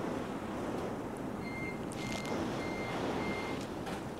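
Electronic battery-backup alarm beeping four times, short high beeps evenly spaced a little over half a second apart, as the mains power cuts out. Under it runs the steady rush of storm wind and rain.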